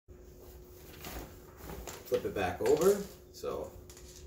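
A man's voice, a few quiet, indistinct words, mostly in the second half, over a faint steady hum.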